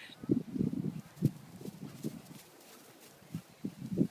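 Doberman pinschers playing with a ball: a string of soft, irregular low thuds and huffs, thicker in the first two seconds and sparser after.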